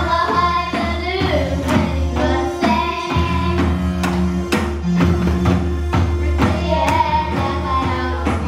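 Children's school band playing a pop song live, with a drum-kit beat, electronic keyboards and guitar under children singing the melody.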